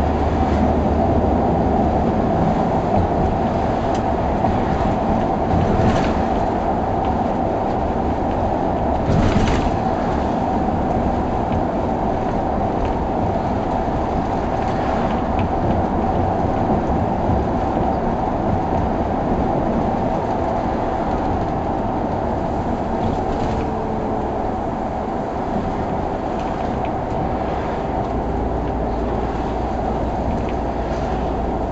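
Cabin sound of a SOR C 9.5 diesel bus under way: steady engine and road noise, with a few short knocks along the way.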